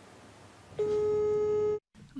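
A single steady telephone tone about a second long, starting a little under a second in and cutting off abruptly: the ringback tone of a phone call being placed for a phone interview.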